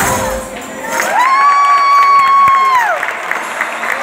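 Folk band music with tambourine stops, and the crowd cheers. About a second in, a long high-pitched call rises, holds level, then falls away.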